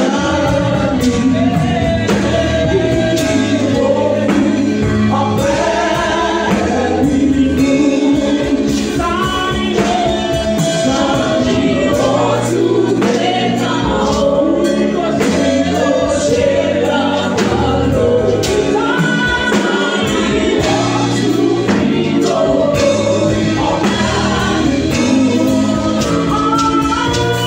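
Live gospel praise singing: a woman leads a worship song through a handheld microphone and PA, backed by a band with steady bass and a regular percussion beat.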